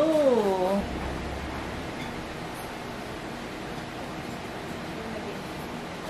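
A woman's drawn-out "ooh" of delight, rising then falling in pitch, lasting under a second, followed by faint steady background noise with a low hum.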